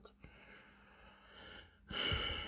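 Quiet pause of faint hiss with a soft breath swelling in the second half and a brief click near the end.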